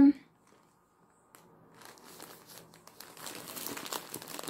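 Clear plastic wrapping on a pack of yarn balls crinkling as it is handled. The rustle starts about a second in and grows busier toward the end.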